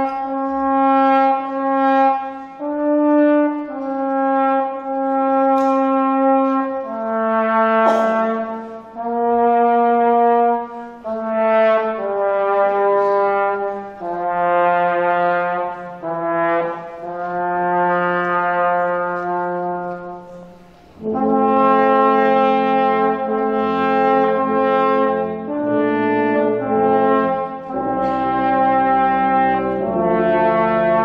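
Brass ensemble, including tuba, playing a slow tune in long held notes, the phrases breathing in and out. About two-thirds of the way in, the lower parts enter fuller, with a deep tuba line underneath.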